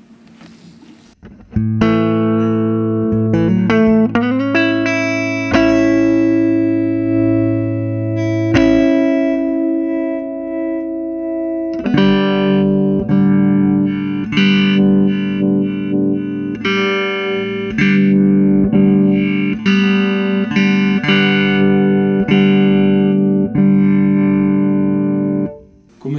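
Electric guitar played through a restored 1960 EkoSuper amplifier on its bright channel: a few picked notes ringing into a long held chord, then a run of struck chords about one a second. The tone shifts as the amp's bass, treble and filter controls are turned.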